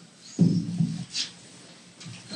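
Microphone handling noise: a sudden low thump and rumble as the desk-stand microphone is gripped and moved, followed by a short hiss.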